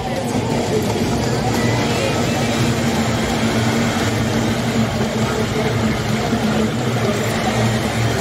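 Kyotei racing boats' two-stroke outboard engines running flat out as a steady drone.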